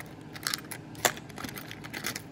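Costume jewelry clinking as hands pick through pieces heaped on a tray: a few light clicks, the sharpest about a second in.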